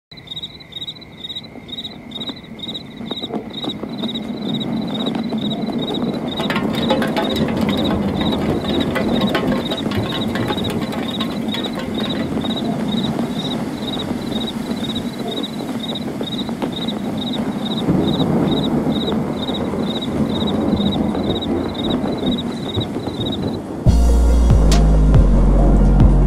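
A cricket chirping steadily at about two to three chirps a second, over a low background noise that grows louder over the first few seconds.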